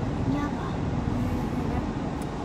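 Steady low rumble of a car's engine and road noise heard inside the cabin, with faint voices now and then.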